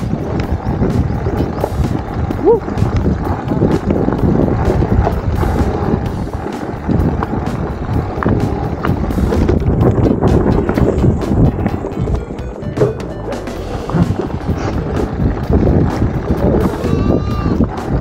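Mountain bike ridden over a rough dirt trail: a continuous rumble of tyres on the ground with frequent rattles and knocks from the bike over bumps.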